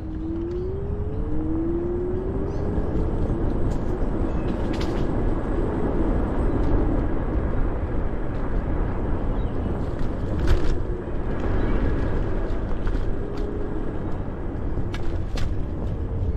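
Ninebot Max G30P electric scooter riding along a paved path: a steady low rumble of wind and tyres, with the hub motor's faint whine falling and rising with speed. A few sharp knocks from bumps, the loudest about ten seconds in.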